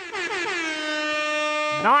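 A horn-like sound effect: one pitched tone that slides down and then holds steady for about a second, dropped in as a comic punchline.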